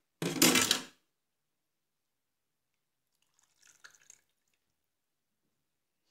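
Kitchen handling sounds as a cucumber mixture is transferred from a bowl into a plastic cup: a short, loud clatter just after the start, then a few faint clinks and scrapes about two-thirds of the way through.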